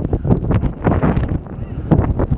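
Wind buffeting the camera microphone, a dense uneven rumble, with a low, indistinct voice mixed in.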